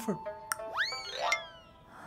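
A comic cartoon 'boing' sound effect over light background music: a sharp click, then a springy sound rising in pitch about a second in, ending with another click and a falling slide.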